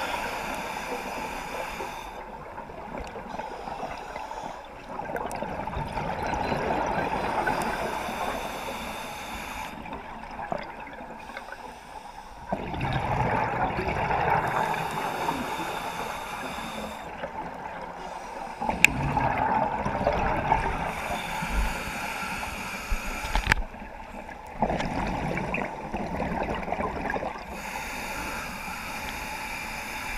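Scuba breathing through a regulator underwater: bursts of exhaled bubbles gurgling about every six seconds, five times, with quieter stretches between breaths.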